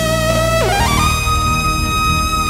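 Wind-controlled synthesizer lead, an IK Multimedia UNO Synth Pro Desktop playing detuned sawtooth oscillators with drive, chorus, delay and reverb, driven by a Lyricon Driver: a held note moves up about an octave to a higher held note about a second in. Underneath runs a backing track with electric bass.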